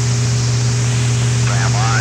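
Steady low hum and hiss on the channel of an old B-52 flight-recorder tape, with a radio voice breaking in about a second and a half in at the start of a SAM launch warning.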